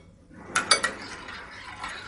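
A metal spoon stirring chopped tomatoes with salt and oil in a glass bowl: a wet scraping with a few quick clicks of the spoon against the glass about half a second in.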